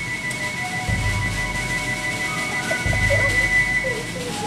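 Flute band playing a slow tune: the flutes hold long, steady high notes over single bass drum beats, two in this stretch about two seconds apart.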